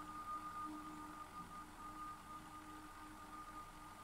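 Faint sustained drone of a few steady held tones over a low hiss: the quiet soundtrack of a TV drama playing.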